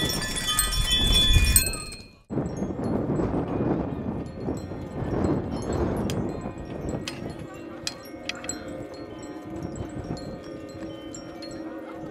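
Wind-driven sound sculptures: a dense run of bright metallic chiming for the first two seconds over wind rumble on the microphone, then a break. After it, gusts of wind with a few sharp ticks, and from about halfway a steady hum of several low tones sets in.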